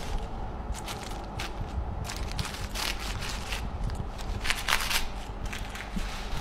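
Serrated bread knife sawing through a paper-wrapped sandwich, the wrapper crinkling in a series of short, irregular strokes.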